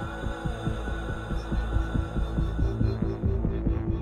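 Tense background score: a low sustained drone under a quick, steady throbbing pulse, like a heartbeat.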